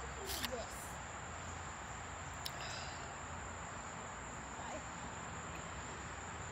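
Steady high-pitched chirring of crickets and other insects, with a few brief knocks and a faint voice in the first second.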